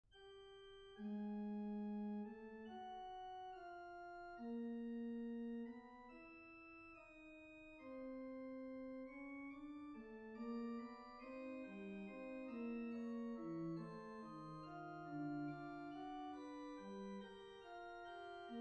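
Organ playing a slow piece of sustained chords, each note held steady and changing about every second.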